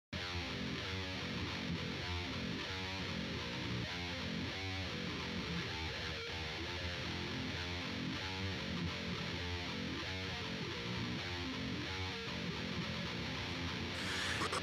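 Intro of a deathcore/djent metal track: an electric guitar plays a repeating figure at a steady, moderate level, before the full band comes in.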